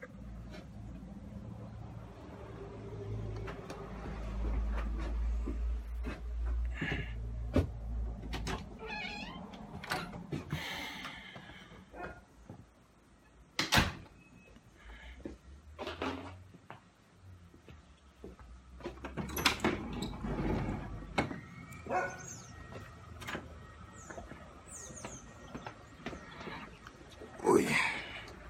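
Rubbing and knocking of a handheld phone's microphone against clothing as it is carried while walking, with a heavy low rumble in the first part. A few short, wavering, high-pitched animal calls come through about a third of the way in and again near the end.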